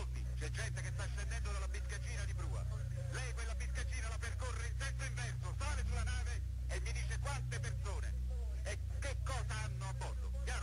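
A man's voice speaking Italian over a telephone line, giving orders in a recorded phone call between the Italian Coast Guard and the captain of the sinking ship, with a steady low hum underneath.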